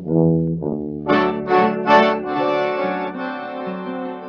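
Instrumental break on a 1942 78 rpm country novelty record by a small band of piano accordion, violin, guitar, string bass and piano: a few short accented notes, then a long held chord that slowly fades.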